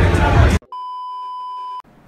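Loud crowd babble with music cuts off abruptly about half a second in. After a brief silence, a steady electronic beep, one pure tone, sounds for about a second and stops.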